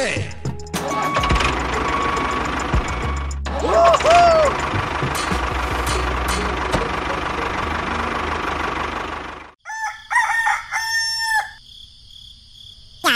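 A steady rumbling engine-like noise as the toy tractor tows its trailer, with a brief pitched call over it about four seconds in. The noise cuts off suddenly, and near the end a rooster crows twice over a thin high insect-like chirr.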